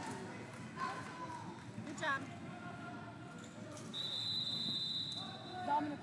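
A referee's whistle gives one steady, high blast of a little over a second, starting about four seconds in, over scattered voices in the hall.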